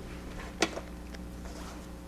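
Pages of a Bible being handled and turned, with one sharp click about half a second in and a few faint ticks, over a low steady electrical hum.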